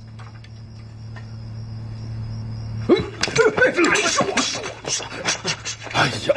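A low, steady hum for about three seconds, then from about three seconds in a burst of men's voices exclaiming and scuffling.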